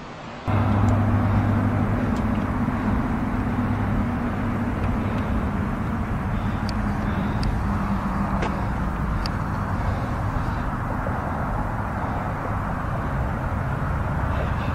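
Steady outdoor background rumble with a low hum, like vehicle or traffic noise on a handheld recording, cutting in abruptly about half a second in. A few faint clicks sound over it.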